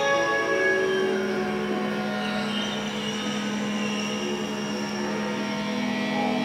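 A sustained drone in D: a steady low tone with thin overtones, part of an experimental electronic and Indian classical drone piece. Higher held notes above it fade out about a second in, leaving the drone on its own.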